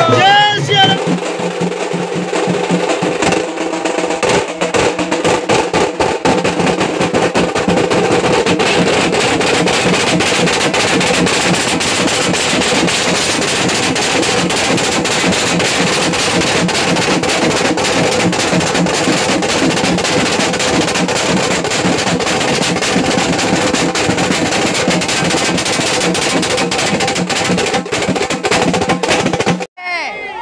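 A group of dhol drums beaten with sticks in a loud, fast, unbroken rhythm, with crowd voices underneath. A voice calls out at the very start before the drumming fills in over the first couple of seconds.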